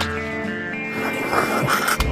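Film score music with several sustained notes held steady, and a noisier, brighter stretch about a second in.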